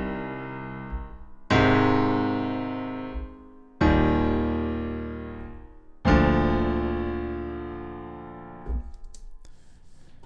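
Sampled Steinway grand piano (Logic Pro X software instrument) played from a MIDI keyboard: block chords, one to a bar, played freely without a metronome. A chord struck just before is still ringing, then three more are struck about two seconds apart, each sustained and fading. The last is released a little before the end.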